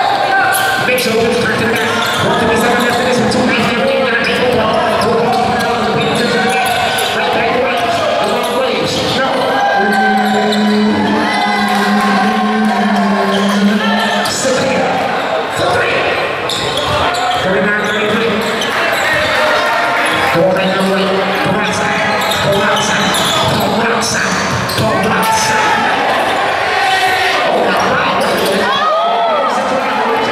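Basketball bouncing on a hardwood gym floor during play, amid the voices of players and spectators, with the echo of a large gym.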